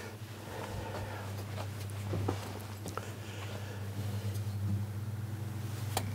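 A car windscreen-wiper motor turning a bicycle wheel that carries moving nativity figures, humming steadily, with a few light knocks scattered through. The mechanism is not yet running smoothly: something is catching somewhere.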